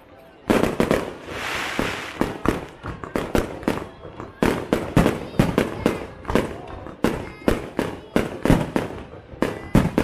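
Aerial firework shells bursting in quick succession: sharp bangs about two or three a second, starting half a second in, with a brief hiss around a second and a half in.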